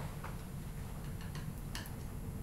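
A few light, irregular clicks and taps of a palette knife on a paint palette while mixing paint, the sharpest a quick pair near the end, over a low steady room hum.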